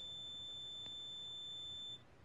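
Cardiac monitor's flatline tone: one steady, unbroken high pitch that cuts off suddenly at the end. It is the alarm for a heart that has stopped beating.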